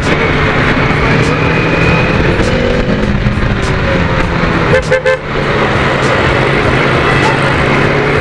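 Bajaj Dominar 400's single-cylinder engine running under way through traffic, with road and wind noise on the helmet-mounted camera's mic. A vehicle horn sounds near the start.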